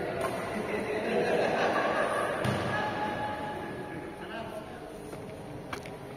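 Indistinct talk echoing in a large indoor sports hall, with a dull thud about halfway through and a single sharp crack near the end.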